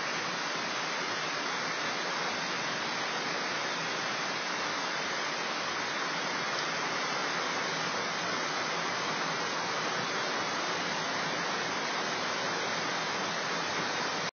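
Catawba River in flood, a steady rush of fast, turbulent water pouring through the woods.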